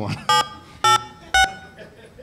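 Touch-tone keypad tones from a desk telephone: three short beeps about half a second apart, each a slightly different pitch, as a PIN is keyed into a voicemail system.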